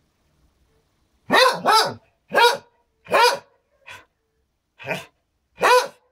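A dog barking: a string of about seven loud barks starting about a second in, the first two close together, the rest coming roughly every three-quarters of a second.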